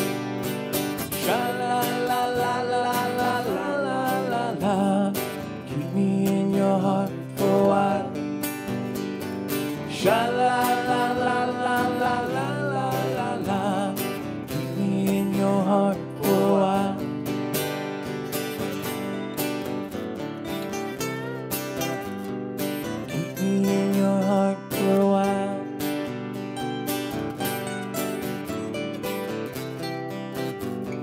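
Two acoustic guitars playing an instrumental passage of a country song: strummed chords under a melody line that bends and wavers in pitch.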